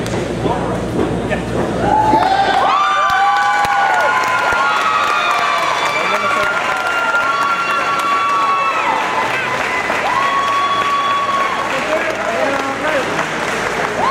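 Fight crowd cheering and shouting. From about two seconds in, several voices hold long yells over the general crowd noise.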